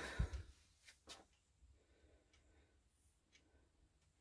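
Near silence: room tone, with a soft low bump and a faint click within the first second or so.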